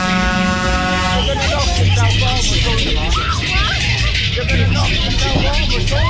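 A horn blast for about the first second, then loud funfair dance music with a heavy bass beat and a voice over it, from a Tagada ride's sound system.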